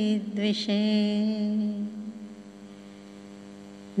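A woman's voice singing a Sanskrit devotional prayer in a slow chant, holding a long note with a brief sibilant break about half a second in. The note fades after about two seconds, leaving a faint steady hum until the chant starts again at the very end.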